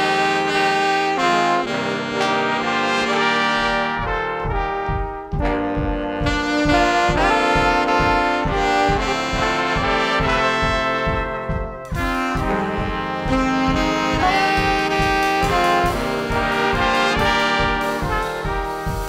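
A big band horn section of trumpets, trombones and saxophones playing sustained chords together, with a steady low beat coming in under them about three and a half seconds in.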